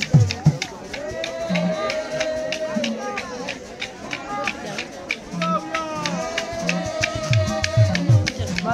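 A group singing together over a steady beat of shaken rattles and a low drum.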